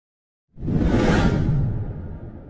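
Whoosh sound effect of a logo reveal, starting about half a second in with a deep rumble under it and fading away.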